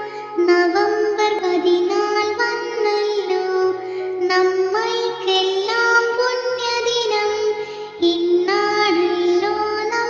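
A Malayalam children's song is sung by a high voice over an instrumental accompaniment with a stepping bass line. There is a brief break between sung lines about three quarters of the way through.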